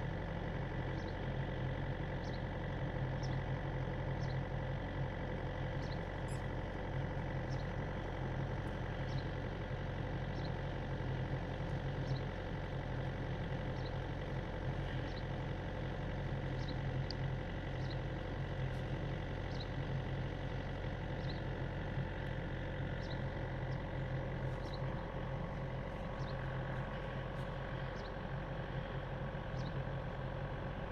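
A steady engine hum, like a motor idling, running unchanged throughout, with a faint short high chirp repeating about once a second.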